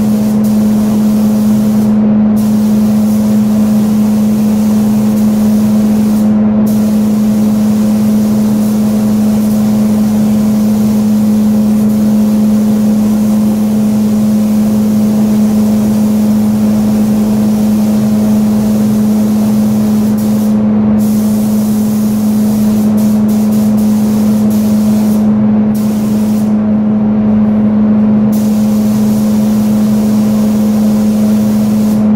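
Spray booth fan running with a loud, steady hum, under the hiss of a spray gun laying silver metallic base coat; the hiss breaks off briefly a few times, and for over a second near the end.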